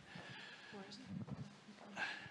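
Faint room sound in a lecture hall: a low murmur of voices and footsteps as people walk along the aisle.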